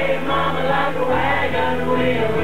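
A bluegrass string band playing live: fiddles, banjo, guitar and upright bass, with the bass stepping between notes under held melody lines.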